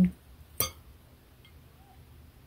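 A single clink of a metal fork against a ceramic plate, about half a second in, followed by faint room tone.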